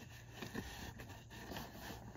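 Faint rustling and scraping of a car seat belt's webbing as it is pulled out and routed over an infant car seat carrier.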